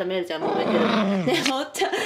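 Toy poodle growling, a long growl that wavers up and down in pitch and breaks up near the end: an angry, bad-tempered warning.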